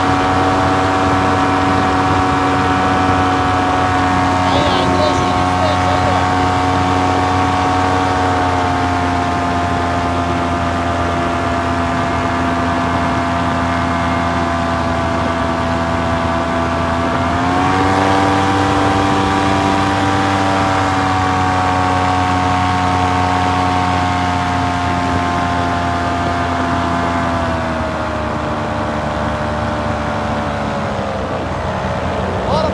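Paramotor engine running steadily in flight, its pitch easing down about eight seconds in, rising again with more throttle about eighteen seconds in, and easing off near the end.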